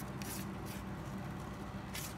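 Quiet steady low background hum, with a few faint light ticks from a fishing rod being handled.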